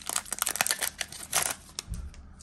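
Foil wrapper of a trading card pack crinkling and crackling as it is handled and the cards are pulled out of it. The crackle is dense for about a second and a half, then thins out.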